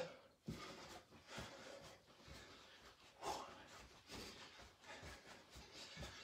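Faint, quick footfalls of a man in socks doing running-man steps on a carpeted rug, with a couple of hard breaths out between them.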